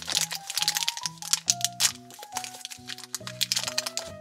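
A small plastic blind-bag wrapper crinkling and tearing as it is pulled open by hand, a dense run of sharp crackles, over steady background music.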